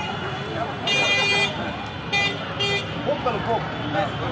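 Street traffic with vehicle horns honking: one horn blast about a second in, then two short toots shortly after, over the murmur of voices in the street.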